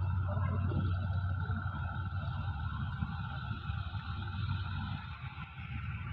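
Steady low engine hum of a CSR SDA4 diesel locomotive approaching at the head of a freight train, with a faint steady higher tone above it.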